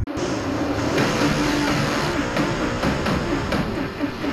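Racing engines under background music: a steady noisy drone with several wavering engine tones, starting abruptly.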